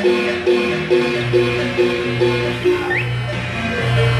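Marimba music: a steady pulse of struck chords about twice a second over a low sustained bass.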